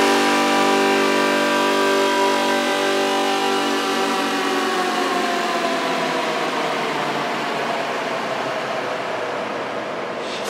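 Psytrance breakdown with no kick drum or bass: a sustained synth drone of several held tones, one of them gliding slowly down in pitch, gradually fading.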